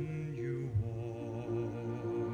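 A male singer performing live into a microphone, holding long notes with a wavering pitch over a steady instrumental accompaniment.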